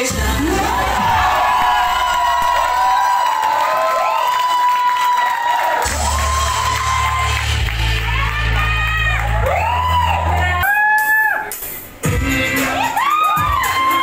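Dance music with heavy bass playing over a crowd cheering and whooping. The music drops out briefly about eleven seconds in, then comes back.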